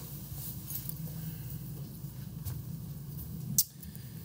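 Room tone in a lecture room: a steady low hum, with a few faint clicks, the sharpest a little before the end.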